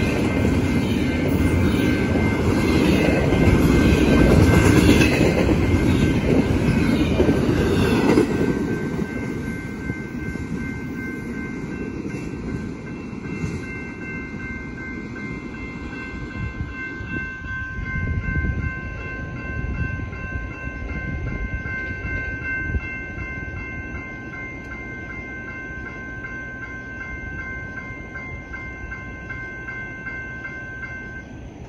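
Fast BNSF double-stack container train passing a grade crossing: the cars and wheels rush and clatter loudly for about the first eight seconds, then fade as the train moves away. The crossing's warning bell rings steadily throughout and is left ringing on its own once the train has gone.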